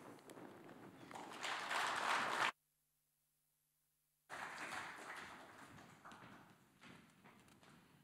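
Audience applauding, swelling over the first couple of seconds. The sound then drops out completely for nearly two seconds, and the applause resumes and slowly dies away.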